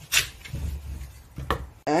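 Cleaver chopping a white radish (daikon) into chunks on a wooden chopping board: two sharp chops, one just after the start and one about a second and a half in.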